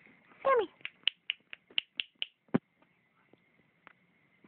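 A cat gives one short meow falling in pitch, followed by a quick run of about eight sharp clicks and a single soft knock about halfway through.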